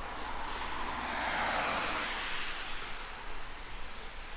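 A car passing on the road, its tyre noise swelling to a peak about a second and a half in and then fading away.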